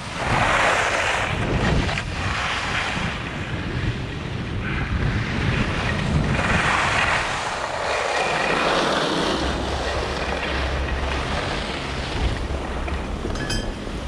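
Skis carving on groomed snow, a swell of scraping hiss with each turn, under wind buffeting the microphone. A low steady hum joins in during the second half, and a few light clicks come near the end.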